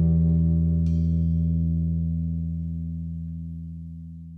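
A band's final held chord ringing out at the end of a song, its low notes strongest, fading steadily away, with a faint light strike about a second in.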